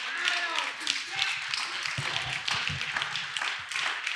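Scattered hand claps with indistinct voices between them.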